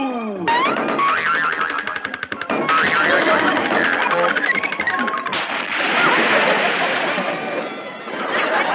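Cartoon music with comic sound effects for a springboard dive: a rapid twanging boing of the diving board, then a whistle that rises and falls in pitch as he flies through the air, then a long noisy wash of a splash from about the middle on.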